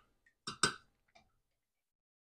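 Two light ticks close together about half a second in: a small spoon tapping against a glass jar of minced garlic as it is scooped out.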